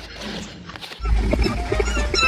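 Cats making vocal sounds. About a second in, the sound turns suddenly louder, with a low rumble under short pitched calls.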